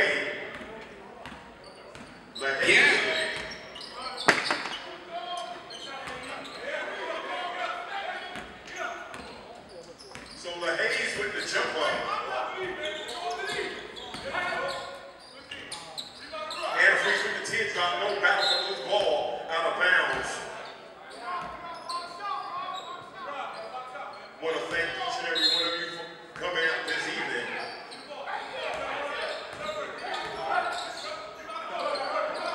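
Indoor basketball game: a ball bouncing on the gym floor, with voices of players and spectators calling out and chatting throughout, and one sharp bang about four seconds in.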